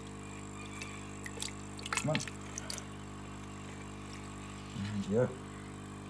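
A steady low hum of several held tones, with a few faint sharp clicks and small splashes about one to three seconds in as a hand works in a tub of water; a short spoken word comes near the end.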